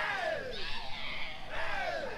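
Several voices giving long shouts that fall in pitch, one after another and overlapping, typical of yelled calls during a Polynesian canoe pageant.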